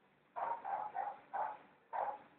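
A dog barking: five short barks in quick succession, fairly faint.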